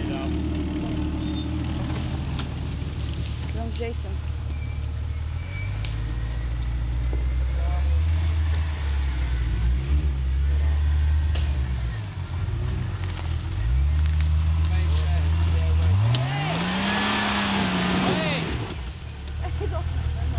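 Jeep Cherokee XJ engine working under load on a steep dirt hill climb, pitch holding, dipping and rising again as the throttle is worked. About three-quarters of the way through the revs climb sharply with a loud burst of noise, then drop away about two seconds later.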